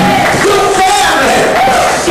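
A man's voice singing and shouting loudly into a handheld microphone, in held notes that bend in pitch.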